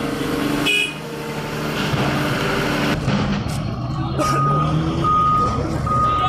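Heavy machine's diesel engine running, with a reversing alarm starting about four seconds in and sounding three short, even beeps.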